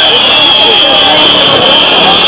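A loud, steady high-pitched buzzing tone over the chatter of many voices.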